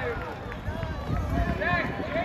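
Voices of several people near the track talking and calling out, over a low rumble.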